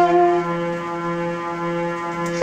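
Saxophone played live, moving to a new note about half a second in and holding it as one long, steady tone.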